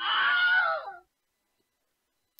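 A high-pitched, scream-like squeal lasting about a second, its pitch sagging as it dies away.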